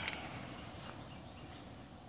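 Faint outdoor background hiss picked up by a phone microphone, with a couple of soft, brief ticks.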